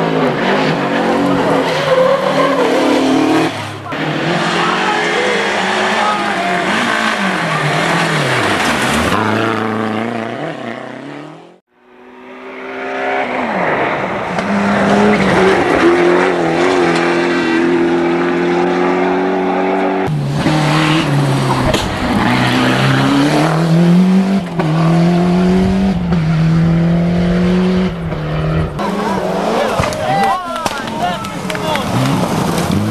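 Rally car engines at full throttle, the pitch climbing and then dropping again and again with each gear change as the cars pass, with spectators' voices underneath. The sound fades out briefly about twelve seconds in and then picks up with another car.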